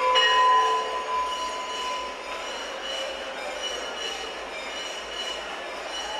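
Temple bells ringing during aarti: a strike right at the start rings out and fades over about a second and a half. A steady dense din follows, with faint high ringing tones through it.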